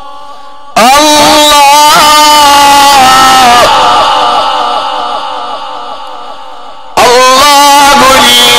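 Male Quran reciter chanting in the melodic Egyptian tajweed style through a loudspeaker system, with long ornamented held notes. A new phrase starts loudly about a second in and another near the end, each trailing off in a repeating echo.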